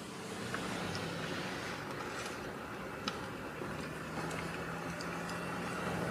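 Steady road and engine noise heard from inside a car driving slowly, with a faint constant hum and a few light clicks.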